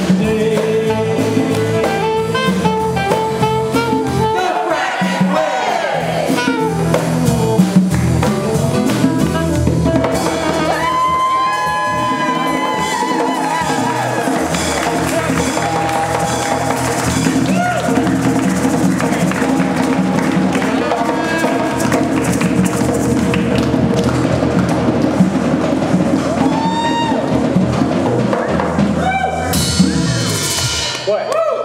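Live folk-style song: a group of voices singing together over strummed acoustic guitars and an electric guitar, at a steady loud level.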